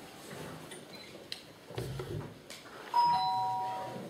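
Two-note electronic chime of a council voting system, sounding about three seconds in: a higher tone followed at once by a lower one, both held and fading away. It is the system's signal as a vote closes. Before it there is only faint room noise with a few light knocks.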